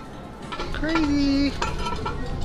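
Ceramic dishes clinking and knocking as they are picked up and handled, with a short held pitched tone about a second in that stops abruptly.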